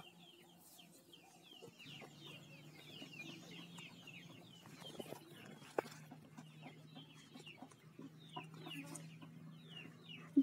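Faint birds chirping repeatedly in short downward-sliding calls, with a low steady hum that comes in about two seconds in.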